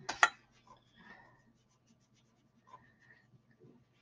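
Pastel applicator rubbing PanPastel onto drawing paper: two firm scratchy strokes right at the start, then lighter rubbing strokes. A faint steady low hum runs underneath.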